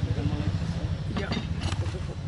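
Faint talk at a table over a steady low rumble, with a few brief clicks about a second and a half in.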